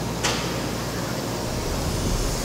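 Steady hum and rush of food-processing plant machinery and ventilation, with a short hiss about a quarter second in.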